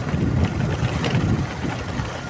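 Wind and engine rumble on the microphone of a moving motorcycle, a steady low buffeting noise as the bike rides along.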